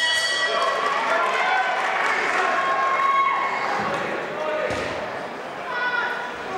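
Boxing ring bell ringing to start the round, its ring fading within the first half-second, followed by a crowd shouting, with a dull thud near the end.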